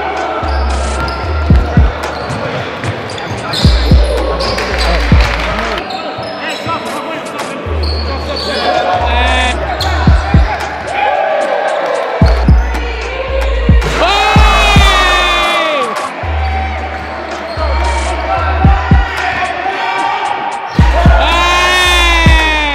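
A basketball bouncing on a wooden court, with sharp high squeals from sneakers, loudest about two-thirds of the way in and again at the end. A hip-hop beat with a deep, repeating bass line runs underneath.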